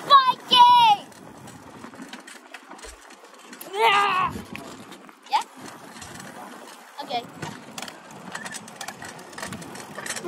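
A young girl's short, high-pitched voice sounds without clear words: two quick calls right at the start and a longer one about four seconds in. Between them are steady wind and rolling noise with light clicks and rattles from the bicycle she is riding.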